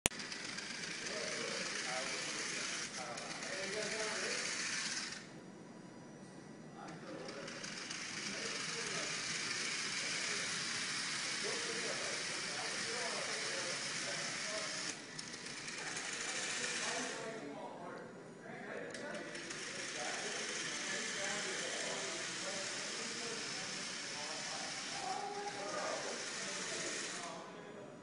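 Small DC gear motors of a Lego robot whirring steadily as it drives. The whirring cuts out briefly three times, around 5 s, 17 s and 27 s in.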